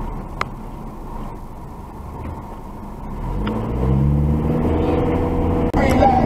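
Car engine and road rumble heard from inside the cabin. A low, steady rumble runs for the first half, then the engine note rises as the car accelerates, and it cuts off sharply just before the end.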